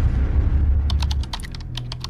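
Intro sound effects: a low rumbling boom dies away, then from about a second in a quick run of keyboard-typing clicks as the text types onto the screen.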